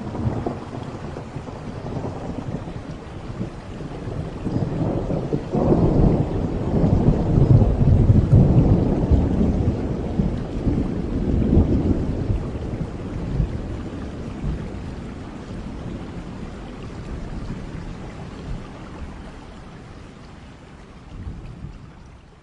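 Rain with a long rumble of thunder that swells a few seconds in, peaks, and then slowly fades away.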